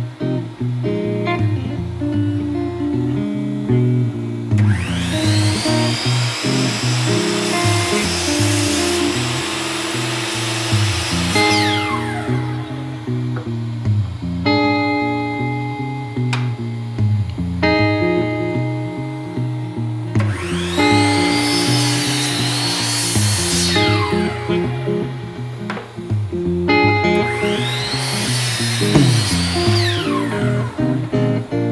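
Bosch sliding miter saw cutting wooden stiles three times. Each time the motor winds up, holds steady through the cut and then winds down: the first cut is long, about four seconds in, and two shorter ones follow near the end. Acoustic guitar music plays throughout.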